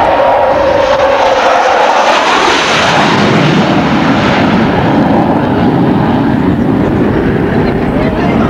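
F-14A Tomcat's Pratt & Whitney TF30 turbofan jet running at takeoff power as the jet climbs out low: a loud, steady roar, brightest about two to four seconds in, with a falling whine that fades in the first two seconds. One of its two engines had failed on this takeoff.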